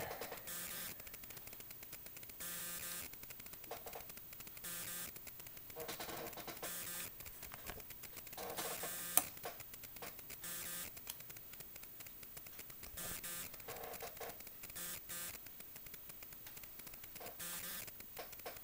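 Quiet background hiss that comes and goes, with one sharp click about nine seconds in, as the oscilloscope's control knobs are turned.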